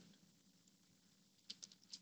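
Near silence, then a quick run of about four faint clicks near the end from a computer mouse and keyboard being worked.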